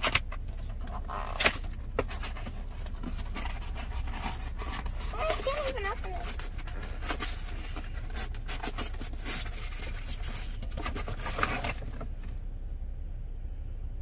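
A cardboard box being opened and its paper packing handled, with irregular sharp clicks, rustles and scrapes, over a steady low rumble inside a car.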